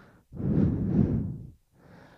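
A person's breathy exhale, like a sigh, lasting about a second, with no voiced pitch.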